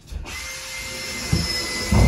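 Cordless drill running steadily for about two seconds with a high motor whine. Two low thumps come near the end, the louder one as the run stops.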